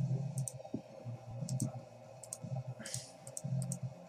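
Computer mouse buttons clicking: short, sharp clicks, mostly in close pairs, scattered over a few seconds, over a low steady hum.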